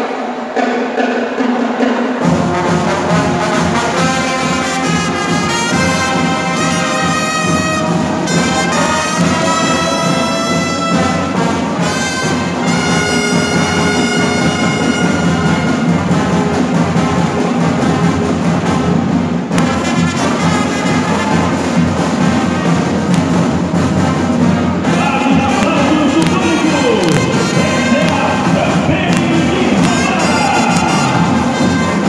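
Brazilian fanfarra, a marching brass band of trumpets, trombones, euphoniums and sousaphone, playing a piece in sustained chords; the full band comes in about two seconds in.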